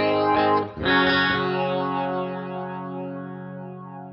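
Electric guitar chords played through the Fractal Audio Axe-FX III flanger: a chord at the start and another about a second in, then the chord rings out and slowly fades while the flanger sweeps through it.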